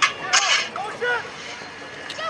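Indistinct voices: a few short calls in the first second or so, then quieter background noise from the crowd.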